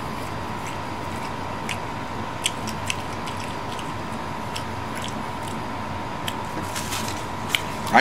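A man chewing a mouthful of honey walnut shrimp with his mouth closed, heard as scattered faint clicks and wet mouth sounds over a steady background hiss and a thin steady high tone.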